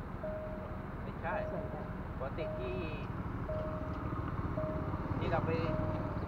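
Railway level-crossing warning signal sounding a repeated single-pitch beep, on for about half a second and off for about half a second. Under it is the low engine rumble of motorcycles, which grows louder as they approach and ride over the crossing in the second half.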